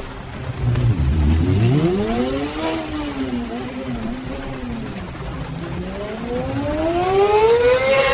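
AI-generated motorcycle engine sound from a Sora 2 video, revving. Its pitch climbs about two seconds in, drops back and wavers, then climbs steadily again over the last few seconds, with a low rumble near the start.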